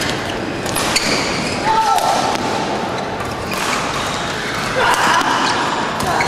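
Badminton rally: sharp racket strikes on the shuttlecock, a few seconds apart, over background chatter in the hall.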